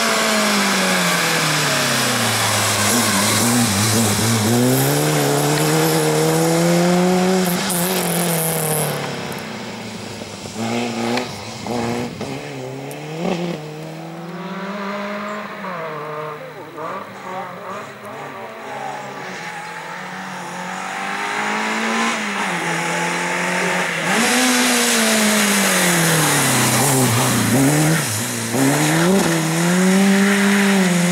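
Peugeot 205 rally car's four-cylinder engine revving hard through a cone slalom. Its pitch falls sharply under braking and climbs again under acceleration several times. It is quieter and choppier in the middle stretch, and loud again near the end.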